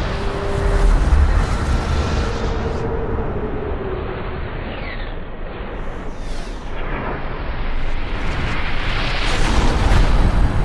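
Cinematic intro sound effects: a heavy, deep rumble with whooshes, swelling louder near the end.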